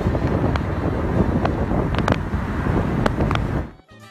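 Wind rushing and buffeting over the microphone of a camera in a moving car with its window open, with car road noise underneath and a few sharp clicks. It cuts off suddenly near the end.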